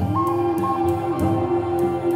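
Background music: a Native American flute holding one long note over a soft, steady beat.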